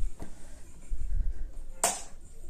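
The thin front frame of a Samsung LED TV being lifted off and handled: a few dull knocks, then one sharp click near the end.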